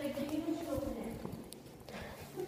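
Footsteps on a hard stone floor, with a faint held voice underneath in the first second.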